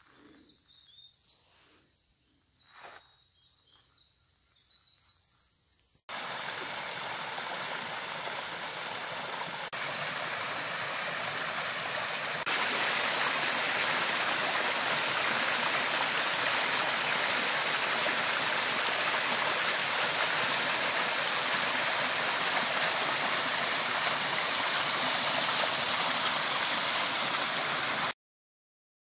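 Water of a rocky forest brook rushing over stones, a steady noise that starts suddenly about six seconds in and gets louder about halfway through. Before it, only quiet with a few faint knocks.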